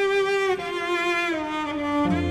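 Slow string music from a TV drama score: bowed strings holding long notes, which slide down to a lower pitch about half a second in and again past the middle.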